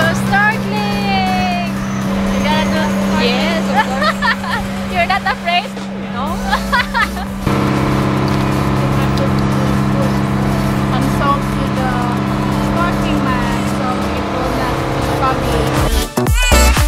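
Boat engine droning steadily under indistinct voices, with background music mixed in; the sound changes abruptly about seven and a half seconds in.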